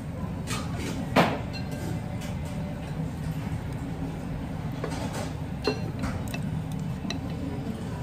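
Chopsticks and a ceramic soup spoon clinking against a porcelain ramen bowl while noodles are stirred and lifted, with a sharp clink about a second in and another near six seconds. A steady low hum runs underneath.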